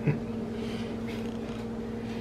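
Steady low hum with a faint overtone, and a brief short sound just after the start.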